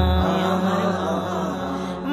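Bengali Islamic naat: voices hold one long sustained note with no beat under them, slowly fading, between two sung lines.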